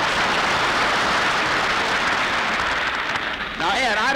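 Studio audience laughing and applauding, a steady wash of noise that eases off near the end as a man starts talking.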